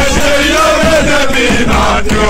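Football supporters' chant: a group of male voices singing together in unison over a musical backing, loud and without a break.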